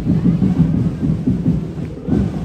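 Dinagyang tribe drum-and-percussion ensemble playing a fast, dense beat, loud and heavy in the low end.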